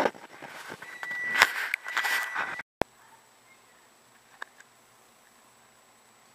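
Handling knocks and rustling of a camera being moved, with a steady high tone for about two seconds and one louder knock. The sound then cuts off abruptly to faint room tone with a couple of small ticks.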